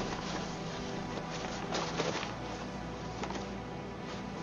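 Newspaper rustling and rubbing in short strokes as oil is wiped off a kukri blade, over a steady low tone.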